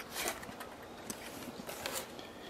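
Faint handling noise from working on a car's heater blower motor: a soft rustle just after the start, then a few light clicks and taps.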